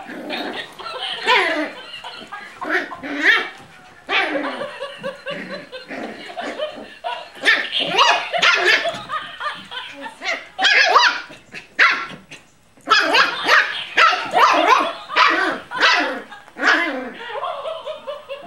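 Plush laughing dog toy barking and laughing in rapid runs of short calls, with a brief lull about two thirds through.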